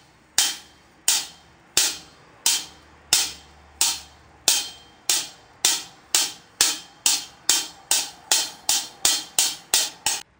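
Single drumstick strikes in a backsticking demonstration, each hit partly made with the butt end of the stick. They come in an even pulse that gradually speeds up, from about one and a half to about two and a half strokes a second, and each sharp hit rings briefly.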